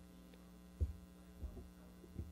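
Faint, steady electrical mains hum on the recording, broken by two dull low thumps, the first a little under a second in and the second about half a second later.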